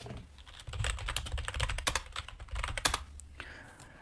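Computer keyboard typing: quick, irregular key clicks, with a low rumble beneath.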